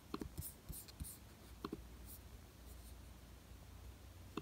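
Faint, irregular clicks of a laptop keyboard and trackpad, a handful of taps spread over a few seconds, over a low hum.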